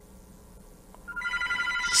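A telephone ringing with a steady electronic tone of a few high pitches. It starts a little over a second in, after a near-silent pause.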